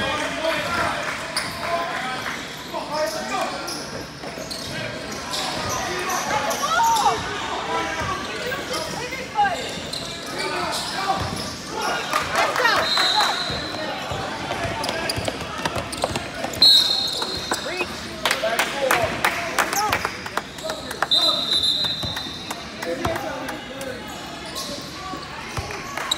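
Indoor basketball game: a basketball bouncing on the court and players' sneakers squeaking, under a steady hubbub of voices echoing around a large gym hall. Three brief, steady high-pitched squeaks stand out, about 13, 17 and 21 seconds in.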